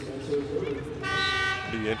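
Basketball arena horn from the scorer's table sounding once, a steady buzz lasting under a second, signalling a substitution at a dead ball after a foul.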